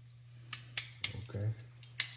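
Several sharp clicks of metal kitchen tongs knocking against a pot of frying oil, over a low steady hum.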